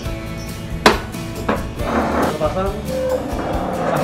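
Background music, with one sharp plastic click about a second in as the single-seater tail cowl is pressed home into its catch on a Kawasaki Ninja 250.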